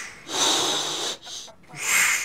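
Rhythmic heavy breathing: breathy, hissing in-and-out puffs, each about half a second to a second long, with short pauses between them.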